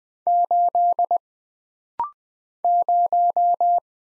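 Computer-generated Morse code at 20 words per minute, keyed as a steady single-pitch beep: the character 8 repeated (dash dash dash dot dot). About two seconds in comes a brief, slightly higher courtesy beep marking the end of that character. Then the next character is sent, 0, as five dashes.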